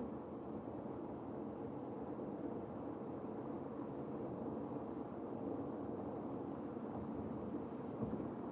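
Steady road and engine noise inside a moving car's cabin, with no rise in pitch: the car is not speeding up even though the driver has the pedal pressed far down, a fault that keeps coming back.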